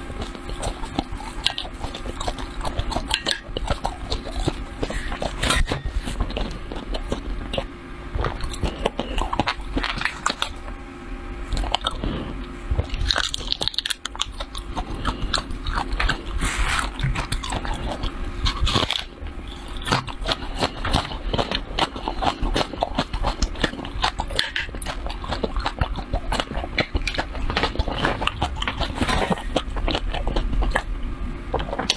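Close-miked chewing of a mouthful of dried, crushed red chili flakes: a dense, steady run of small crisp crunches and crackles.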